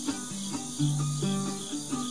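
Ukulele played instrumentally, plucked notes and chords changing a few times a second, with crickets chirring steadily in the background.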